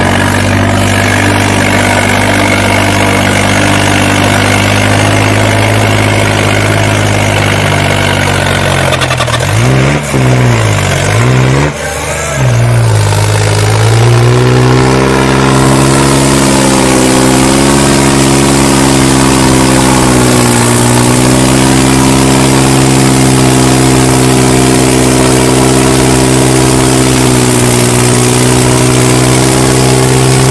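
John Deere tractor's diesel engine working hard under load, running steadily. About ten seconds in the engine speed drops sharply and recovers twice, then holds high with a slight waver while black smoke pours from the straight stack.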